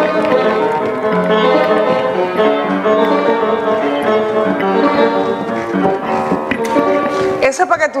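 A grand piano being played by hand, sustained chords and changing notes ringing out together, stopping shortly before a voice starts to speak near the end.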